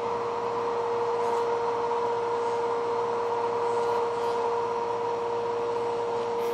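Motor-driven rotating neodymium magnet drum spinning at about 7,000 RPM: a steady whir carrying one high, unchanging whine.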